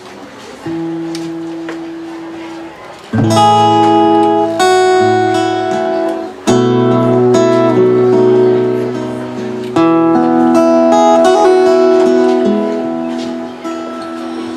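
Acoustic guitars playing a slow song introduction: a soft chord, then three full strummed chords about three seconds apart, each left to ring and fade.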